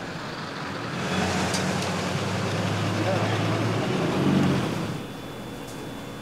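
A motor vehicle passing in street traffic: engine hum and road noise swell from about a second in, peak near four seconds and fade away.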